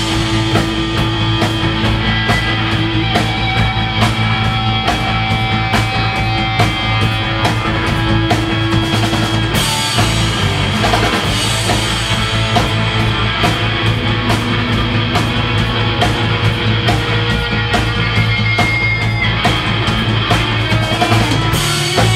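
Live rock band playing an instrumental passage: drum kit keeping a steady beat under sustained guitar, with no singing.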